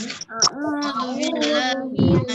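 Children and a female teacher reciting Quran verses together in a chanting melody, several voices overlapping slightly out of step, heard through a video call.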